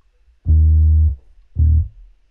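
Two low notes of a sampled electric bass played from a MIDI keyboard, a longer note about half a second in and a short one near the end, as part of a bass line being recorded.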